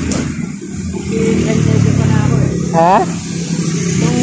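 A motor vehicle engine running close by on the street, getting louder about a second in.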